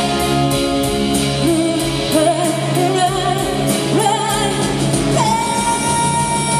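Live pop ballad: a woman singing with vibrato over an orchestra with strings, keeping a steady slow beat; near the end a note rises and is held.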